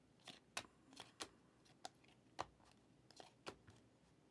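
2023 Panini Prizm Draft Picks cards being flipped through by hand, the front card slid off the stack to show the next. About ten short, sharp clicks and snaps come at uneven spacing.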